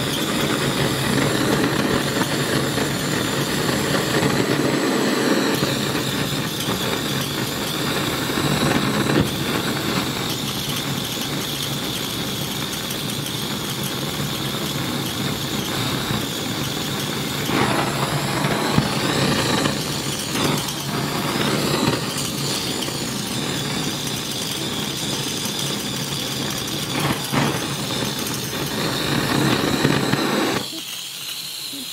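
Gas burner flame burning steadily, a continuous rushing noise with a faint high whistle and a few brief surges, as it fires a platinum overglaze onto a ceramic bowl.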